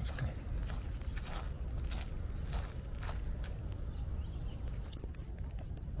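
Footsteps crunching over dry fallen leaf litter, about two steps a second.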